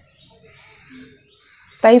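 A bird's single short, high chirp just after the start, over a faint background.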